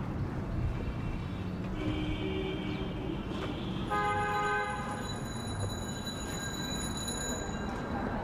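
Vehicle horns sounding over steady city street noise: a fainter horn about two seconds in, then a louder one about four seconds in that dies away over the next few seconds.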